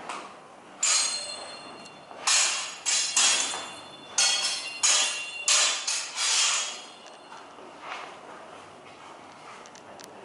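Steel training longswords clashing in a sparring bout: about eight sharp, ringing blade strikes in quick exchanges, each ring dying away within a moment.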